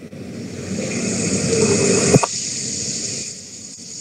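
Rushing noise coming over the video-call audio, swelling over the first couple of seconds and then easing off, with a sharp click a little after two seconds in. The presenter's voice has dropped out on a connection that keeps cutting in and out.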